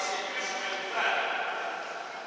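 Indistinct men's voices calling out, echoing in a large sports hall, loudest about a second in.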